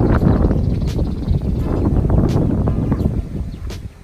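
Wind buffeting the microphone: a loud, rough rumble with a few faint clicks, dropping away near the end.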